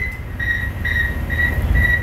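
Sputnik 1's actual radio signal beeps, from an old newsreel played over room speakers: short high beeps, about two a second, over a low steady rumble.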